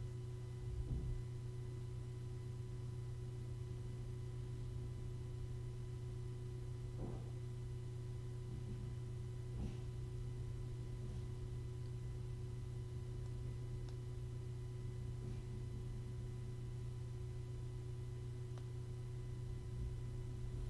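Steady low hum with a few faint high steady tones over it, broken by a few faint soft clicks.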